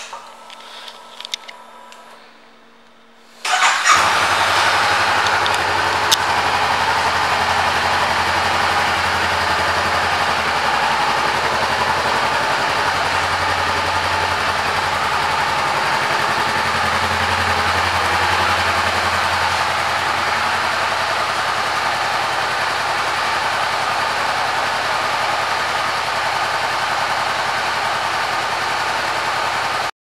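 A 2017 Honda CB500F's 471 cc parallel-twin engine is started about three and a half seconds in, after a few faint clicks from the controls, and then idles steadily.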